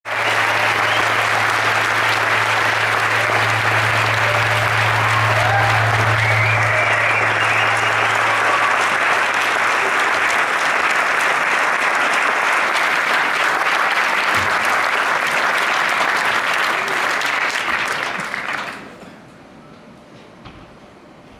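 Concert audience applauding steadily, with a low steady hum underneath for about the first half; the applause dies away near the end.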